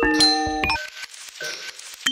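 Background music led by bell-like chime notes: a quick cluster of struck notes in the first second, then a few sparser notes ringing out.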